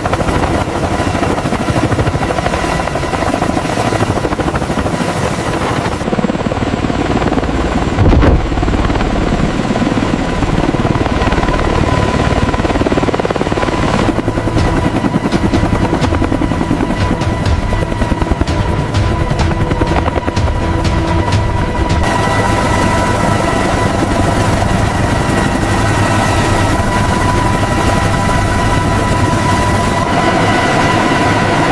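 Heavy-lift helicopter running loud and steady, rotors and turbines together, with music underneath; a low thump comes about eight seconds in.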